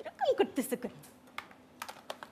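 A short vocal sound with falling pitch in the first second, followed by a few light, sharp clicks.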